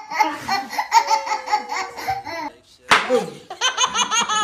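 Laughter in quick, even pulses for about two and a half seconds, then a sharp click just before three seconds, then a baby laughing in higher-pitched bursts near the end.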